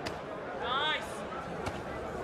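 Boxing gloves landing punches: a sharp thud right at the start and another about a second and a half later. In between, a short, high-pitched shout rises over the arena noise.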